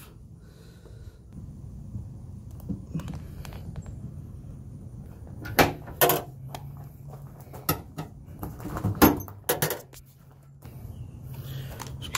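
Clicks and knocks of the removed tailgate handle mechanism and the truck's tailgate being handled, with several sharp knocks from about halfway through, over a low steady hum.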